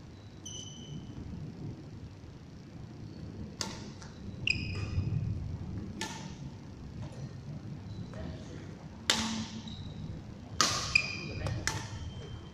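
Badminton rackets striking a shuttlecock in a rally: five sharp cracks a second or two apart, with short high squeaks of court shoes on the hall floor between them.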